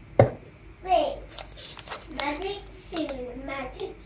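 A child's voice talking, with a single sharp knock just after the start.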